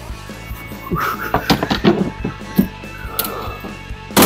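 Background music, with a run of clunks and metal knocks from about one to two and a half seconds in as an LS V8 hanging from an engine hoist is worked out past the truck's cowl.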